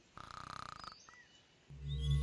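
A short, faint snore lasting under a second, then quiet; a low steady hum begins near the end.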